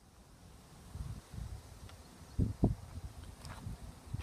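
Wind buffeting the microphone: an uneven low rumble with two stronger gusts about two and a half seconds in.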